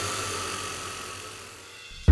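Soft ambient music bed: a hissing wash with faint held tones, fading away slowly.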